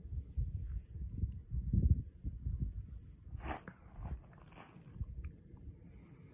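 Irregular low thumps and rumbles close to a handheld phone's microphone through the first half, then two short breathy noises about three and a half and four and a half seconds in, as a man breathes while tasting a hot pepper.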